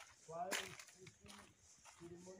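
People talking quietly in the background, the words indistinct.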